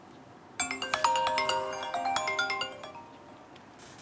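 Mobile phone ringtone for an incoming call: a quick run of bright chiming notes starting about half a second in, ringing on and fading away after about two seconds.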